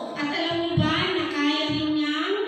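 A group of children singing together with a woman's voice, on long held notes.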